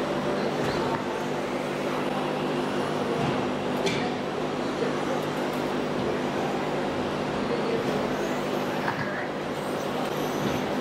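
Steady noise and low hum of an indoor RC raceway with radio-controlled cars running on the track, and one brief sharp click about four seconds in.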